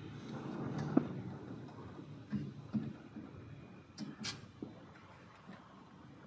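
A handful of faint, irregular metallic clicks and taps as a thin steel tool touches the needles of a flat knitting machine's needle beds, the sharpest about four seconds in.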